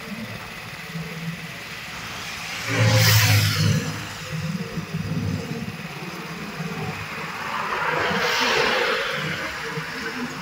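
Motor vehicles passing on the road: a loud, short pass with engine sound about three seconds in, then a second one swelling and fading near the end.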